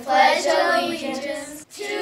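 Children's voices reciting the opening of the Pledge of Allegiance together: "I pledge allegiance to the flag of the…", with a short pause for breath near the end.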